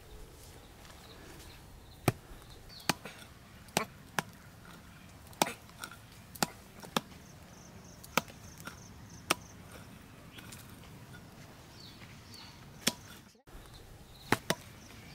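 Small hand hoe chopping into dry, clumpy soil: about ten sharp strikes at irregular intervals, with a longer pause before the last one.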